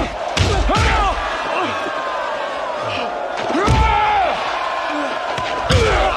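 Film sword-fight soundtrack playing over a hall's speakers: heavy hits with grunts and shouts from the fighters over a steady crowd roar. The loudest hits fall about a second in, near the middle and near the end.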